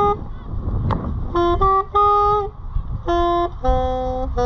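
Music: a solo wind instrument plays a melody in short phrases of held notes, with a pause and a sharp click about a second in. A low rumble runs underneath.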